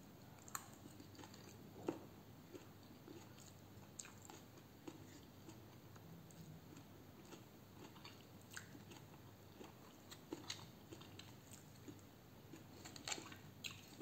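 Faint chewing of a mouthful of raw arugula salad, with a few soft clicks scattered through it.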